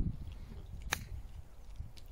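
A nine iron striking a golf ball on a short chip and run: one crisp click about a second in.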